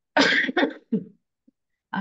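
A person coughing: a short fit of a few coughs in quick succession, the first the loudest, over within about a second.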